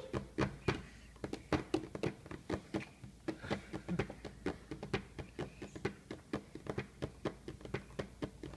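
A hand tapping and drumming on a plastic high-chair tray: a quick, uneven run of light taps, about three or four a second.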